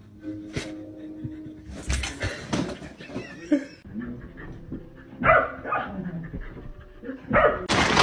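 A dog barking several times, in short separate bursts.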